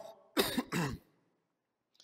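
A man clears his throat once, briefly, about half a second in.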